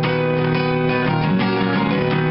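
Steel-string acoustic guitar with a capo, strummed chords ringing on, renewed by a strum stroke every half second or so.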